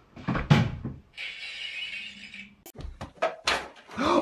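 Dull thuds and light knocks of tossed toilet rolls landing and striking things in a room, with a rustling hiss lasting about a second in the middle and a quick run of knocks near the end.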